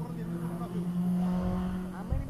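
Porsche 911 flat-six engine running hard on a hillclimb run, a steady note that grows louder and is loudest from about a second in.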